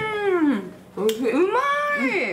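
A woman's drawn-out, sing-song exclamation of delight at the taste of food ("oishii~"). Her voice first glides down and fades, then rises and holds in a second long call.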